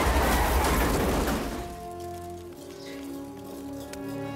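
A loud, noisy crash of piling-up cars dies away over the first second and a half, giving way to soft film-score music of slow, held chords.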